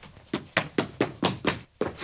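A rapid series of sharp knocks, about four a second.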